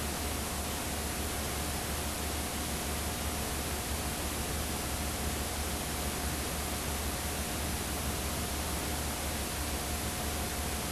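Steady hiss with a low hum and a thin steady tone, unchanging throughout: the noise of a blank stretch of videotape playing back with no programme sound.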